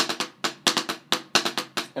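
Drumsticks playing the single drag rudiment on a practice pad set on a snare drum: a quick, steady run of about six to seven strokes a second in triplet groups, each group opening with a doubled drag stroke accented on the first note.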